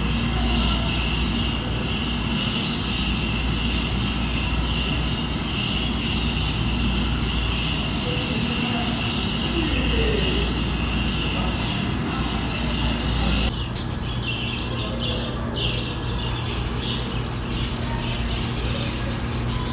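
A steady droning background hum, then after an abrupt change about three-quarters of the way in, the chirping chatter of a flock of budgerigars.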